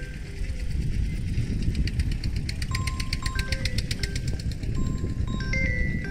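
A mobile phone ringtone: a short chime-like tune of a few clear notes, repeating every couple of seconds, over low rumbling wind noise on the microphone. A stretch of rapid fine ticking runs for about two seconds in the middle.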